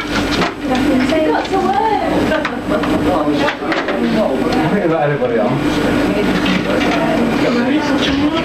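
Background office chatter: several people talking at once, too jumbled to make out, with a steady low hum underneath.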